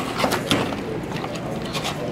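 A snack-pie wrapper crinkling and tearing open. There is a quick run of crackles in the first half second, then scattered rustles.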